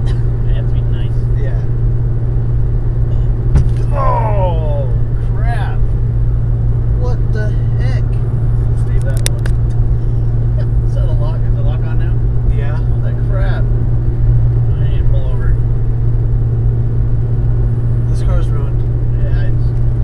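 Steady low drone of a Mitsubishi Lancer Evolution IX cruising at freeway speed, heard from inside the cabin: engine and tyre noise blended into one constant hum.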